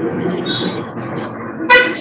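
Steady background noise over a video call's audio, with a short vehicle horn toot near the end.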